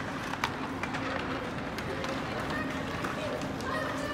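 Ice hockey game sound in an indoor rink: a steady wash of skates on the ice and indistinct spectator voices, with a couple of sharp stick-and-puck clicks in the first second.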